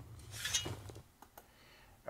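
Faint shovel-digging sound effect ending the track: one short scrape of a blade into dirt about half a second in, then near silence.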